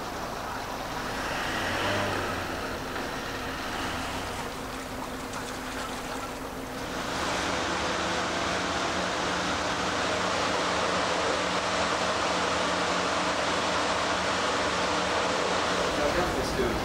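Harbour sound of a vessel at the quay: a ship's engine running under an even rush of wind and water. About seven seconds in the sound changes to a louder, steady rush with a low engine hum beneath it.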